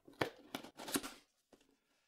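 Cardboard product box being handled and slid open: a few short scrapes and rustles of cardboard, mostly in the first second.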